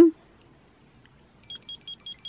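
Tamagotchi virtual pet's piezo speaker beeping: a quick run of short, high, electronic beeps, about six or seven a second, starting halfway through, as the toy signals its egg beginning to hatch.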